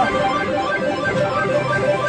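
Claw machine's looping electronic jingle music, a busy string of held notes. It is the same sound the player calls addictive, a "ppyorong ppyorong" tune.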